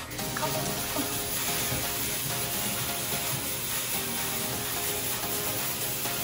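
Stage fog machine blowing out fog with a steady, loud hiss, over faint background music.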